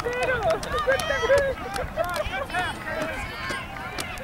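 Many overlapping high-pitched children's voices calling and shouting across a soccer field, no clear words, with a few short clicks among them.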